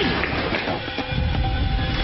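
Film-trailer sound design: a loud, heavy low rumble that grows about a second in, with a steady drone setting in about half a second in.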